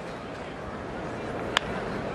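Ballpark crowd murmur, with one sharp crack of a bat hitting a pitched ball about a second and a half in, sending a ground ball up the middle.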